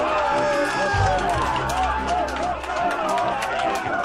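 A room of mission-control engineers cheering, shouting and clapping at the confirmed landing, many voices overlapping, with music playing underneath. The clapping grows denser in the second half.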